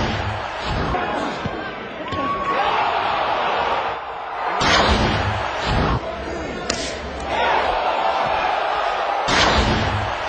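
Boxing arena crowd noise, a steady din of shouting voices, broken by several heavy thumps: one at the start, a cluster about five to seven seconds in, and another near the end.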